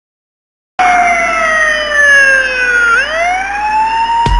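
A siren sound effect comes in about a second in. Its single wailing tone slides slowly down in pitch, then swoops back up and levels off.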